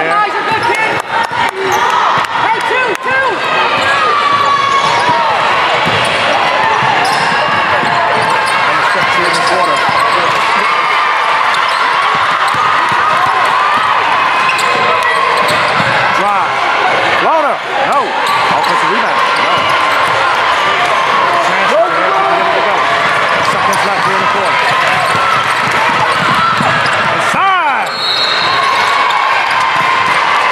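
Live basketball game in a large gym: a basketball dribbling on the hardwood floor, sneakers squeaking, and voices of players and spectators calling out.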